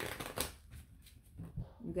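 A deck of tarot cards being riffle-shuffled in the hands: a quick run of card flicks in the first half second, then fainter rustling and snaps.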